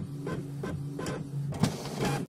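Large-format inkjet poster printer running as the printed poster feeds out: a steady motor hum with a regular ticking about three times a second, and one louder knock near the end.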